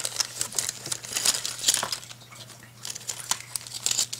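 Handling noise from a hand rubbing and brushing against the camera close to its microphone: a run of irregular crackles and rubbing clicks, quieter for a moment in the middle, then picking up again, over a steady low hum.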